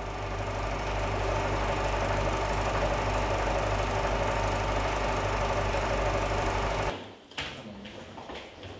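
A cinema film projector running with a steady mechanical whirr and clatter, which cuts off suddenly about seven seconds in.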